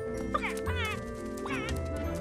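An animated dodo character's short wavering vocal cries, three in quick succession, over background film music with held notes.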